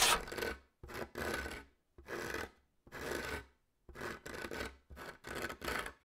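Fingernails scratching, in a series of about nine short rasping scrapes with brief silent pauses between them, the first scrape the loudest.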